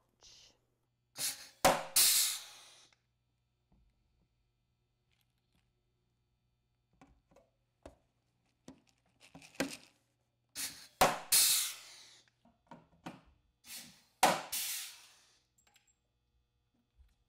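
Pneumatic rivet gun setting blind rivets through a metal latch. Each rivet gives a sharp crack followed by a short hiss of air, three main times, with smaller clicks between.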